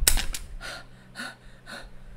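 A sharp click right at the start, then a woman's short breathy gasps and exhalations, several about half a second apart and fading, as she struggles with a stuck sticky tab.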